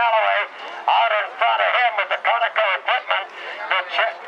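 A man's voice calling the race over a loudspeaker, thin and tinny, the words indistinct. It runs without a break.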